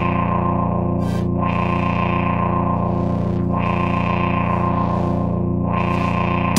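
Eurorack modular synthesizer holding a sustained, distorted drone chord over a steady bass, with no drum beat; its bright upper range sweeps open and shut about every second or so as a filter is modulated.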